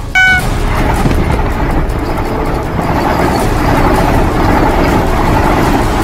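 A train passing close by at speed: a loud, steady rushing rumble of wheels on rail. A brief high tone sounds just after the start.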